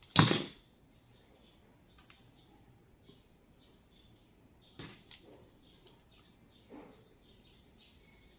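A short, loud scraping rasp just after the start as a blade strips the insulation off a thin USB-cable wire, followed by a few faint clicks and rustles of hands twisting the bare copper strands.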